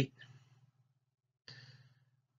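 A pause in a man's narration: the last word trails off, and a faint low hum fades out. About one and a half seconds in comes a short, soft intake of breath before he speaks again.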